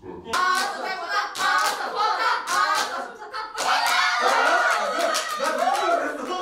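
A small group clapping their hands together with excited voices shouting and cheering over the claps, starting about a third of a second in.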